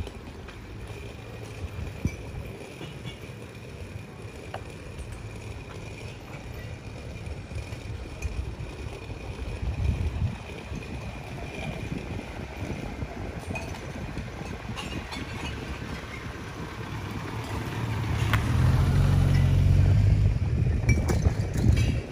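Outdoor city street ambience heard while walking, with a steady low rumble and a few faint clicks. Near the end the low rumble swells much louder for a few seconds, then drops back.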